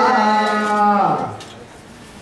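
A voice chanting a devotional hymn, holding one long note that slides down in pitch and ends a little over a second in; faint room noise follows.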